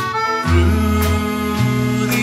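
A live country band playing a slow ballad: accordion and fiddle carrying the melody over electric guitar, steady low bass notes and light drums.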